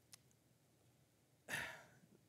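Near silence with a faint click, then one short breath from a man into a close microphone about one and a half seconds in.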